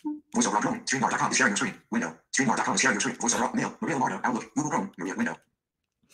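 Mac VoiceOver screen reader's synthetic voice reading out window and tab names at a really fast speech rate, a rapid stream of clipped speech.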